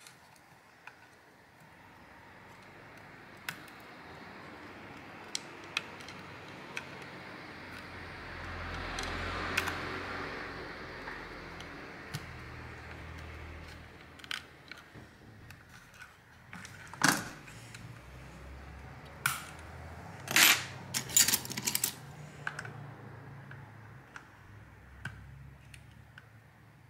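Metal tweezers clicking and tapping against a plastic speaker housing and its small wire connectors, with hand-handling noise of the housing. The clicks come irregularly, with a stretch of rubbing near the middle and a cluster of louder clicks later on.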